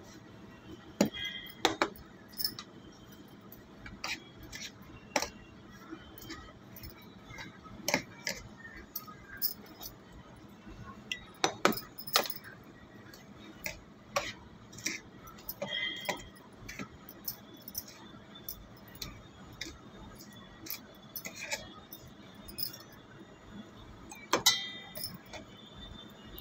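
A steel spoon clinking and scraping against a steel cup and a plate while milk is spooned onto powdered chocolate cereal and biscuit crumbs and stirred in. Irregular sharp clinks come every second or two, loudest about a second in, around twelve seconds in and near the end.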